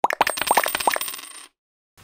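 Coin-clinking sound effect for a logo sting: a quick run of metallic clinks and pings that fades and stops about a second and a half in.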